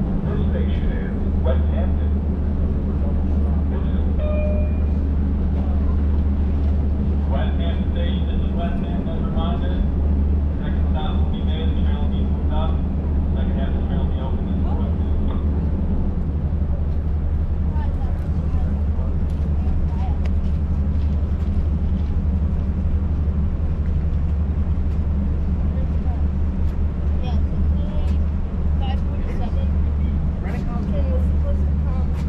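A standing Long Island Rail Road diesel train with bi-level coaches idles at the platform, giving a steady low rumble throughout. People's voices are heard over it in the first half.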